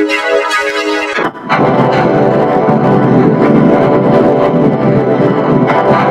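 Electronically distorted logo jingle music with keyboard-like tones. About a second in it sweeps down in pitch and turns into a denser, harsher wash of sound.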